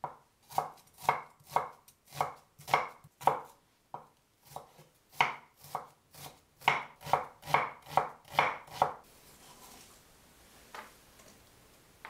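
Large kitchen knife slicing a peeled onion on a wooden cutting board, about two cuts a second with a short pause partway through. The chopping stops about nine seconds in.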